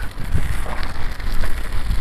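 Wind buffeting the microphone of a camera on the move: an uneven low rumble with crackle, with no voice over it.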